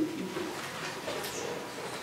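A man's low, quiet hums and murmurs into the microphone between words, with faint room tone.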